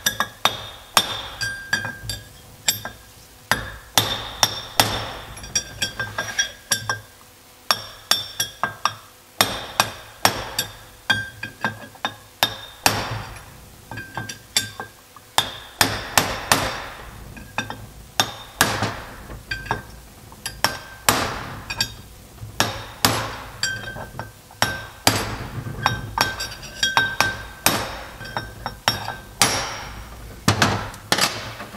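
Hammer striking a steel bearing punch to drive a bearing race out of a transaxle differential cover: repeated sharp metallic strikes in quick runs of several blows, each ringing briefly.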